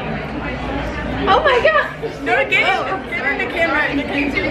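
Women's voices talking and exclaiming over the background chatter of a busy dining room.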